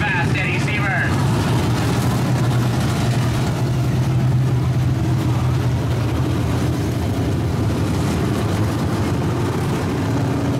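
Dirt-track modified race cars' V8 engines giving a steady low drone as the cars pass one after another, with no revving. A nearby voice is heard in the first second.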